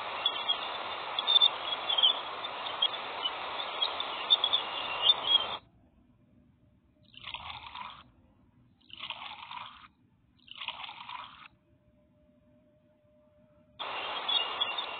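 Jupiter's radio emissions recorded by the Cassini spacecraft and converted to sound: a steady hiss with sharp crackles, which cuts off abruptly about five and a half seconds in. After that come three short bursts of noise about a second and a half apart, then a faint steady tone.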